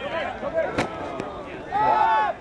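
Voices of players shouting from the sideline during play, with one sharp smack a little under a second in and a loud shout near the end.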